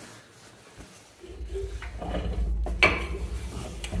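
Old Lister diesel engine being turned over by hand, its decompression lifted: a low rumble sets in about a second in and keeps going, with a few sharp metal clinks. It turns over again but is still a bit solid.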